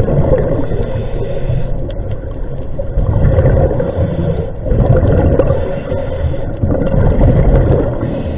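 Underwater sound heard through a GoPro housing: the low rumbling gurgle of a scuba diver's exhaled regulator bubbles, swelling in surges a few times.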